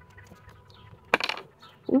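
A crystal point toppling over onto a wooden ledge: one sharp, hard clatter a little past halfway through.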